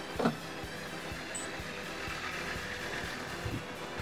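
Steady low hum of warehouse machinery, such as conveyors and fans, under faint background music. A brief voice-like sound comes just after the start.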